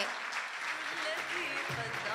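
Audience applauding, with background music fading in beneath it about halfway through.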